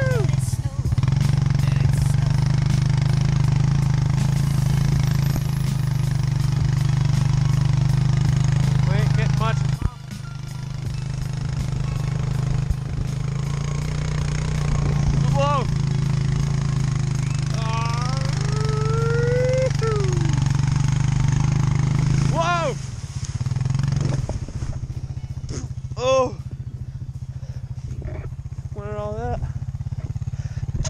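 Four-wheeler (ATV) engine running steadily under load as it tows a sled through snow, easing off sharply about ten seconds in and again after about 23 seconds. Short vocal yells break in now and then.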